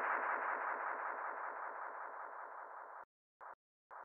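The closing electronic tone of a breakcore track, fluttering and fading out steadily. It cuts off about three seconds in, followed by two brief blips.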